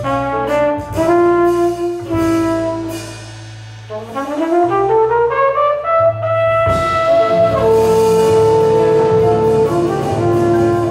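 Jazz trumpet solo over an upright double bass. Quick phrases lead to a brief soft dip, then a rising run climbs to a high note, and a long held note follows near the end.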